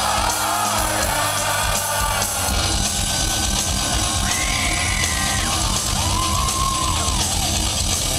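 Heavy metal band playing live, with distorted guitars, drums and singing, recorded loud from within the audience. Crowd yells mix in with the music.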